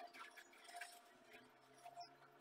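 Faint scratchy rustling of a comb pulled through detangled hair in a few short strokes.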